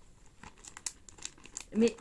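Clear plastic zip-lock bag crinkling as it is handled and pulled open, a scatter of faint, sharp plastic crackles.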